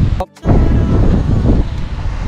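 Loud low rumble of vehicle and wind noise on the microphone, broken by a sudden brief dropout about a quarter of a second in.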